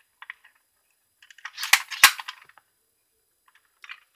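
Plastic toy figure being handled close to the microphone: a few faint clicks, then a short burst of clicking and rattling with two sharper clicks about a third of a second apart, near the middle.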